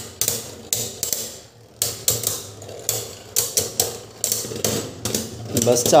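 Two Beyblade Burst spinning tops clashing in a plastic bowl stadium: a string of sharp plastic-and-metal clicks and knocks at irregular intervals over a low spinning hum.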